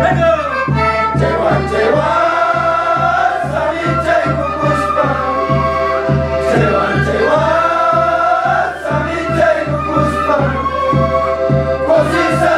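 A group of people singing a Quechua song together in high voices, the melody held and sliding between phrases, over a steady low beat of about three strokes a second.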